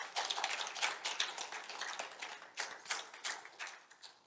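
Congregation applauding, a crowd of irregular hand claps that thins out and dies away toward the end.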